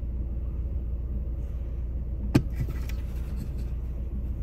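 A steady low rumble, with one sharp click a little past halfway and a fainter click just after it as a suction-cup phone mount is set against a car dashboard.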